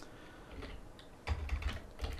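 Computer keyboard typing: a faint click at the start, then a short run of keystrokes in the second half as a short name is typed in.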